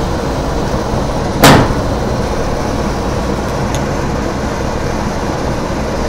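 Celsius MDH-158 industrial dehumidifier running steadily, its fan and compressor giving a constant hum and rush of air while it is still working up to full power. A single brief sharp noise comes about one and a half seconds in.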